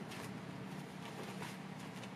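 Quiet room tone: a steady low hum, with a faint tap just after the start.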